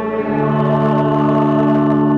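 Choir singing with organ, holding a sustained chord that moves to a new chord about a third of a second in: the close of the sung acclamation before the Gospel.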